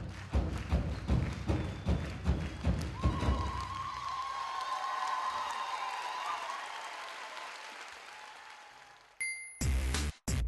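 Big drums beaten in a steady rhythm, about three strokes a second, stop about three seconds in. A single long, slightly wavering high note takes over and slowly fades out. A different piece of music cuts in near the end.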